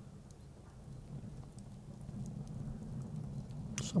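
Log fire burning in a steel chiminea, with faint scattered crackles over a low steady rumble.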